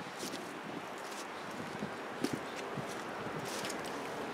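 Steady outdoor background hiss with a few faint clicks and scuffs, one shortly after the start, one about two seconds in and one near the end.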